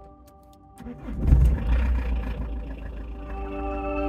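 A few light clicks, then a car engine starting about a second in: a short burst as it catches, settling into a steady low idle. Quiet background music runs underneath.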